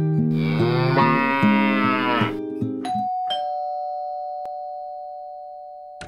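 A short plucked-guitar jingle with a cow's moo over it, rising and falling for about two seconds; the music ends about three seconds in. Then a two-note ding-dong doorbell chime rings out and slowly fades.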